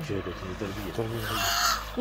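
A low murmuring voice, then a single loud, harsh caw about one and a half seconds in, typical of a crow. A short falling vocal cry comes right at the end.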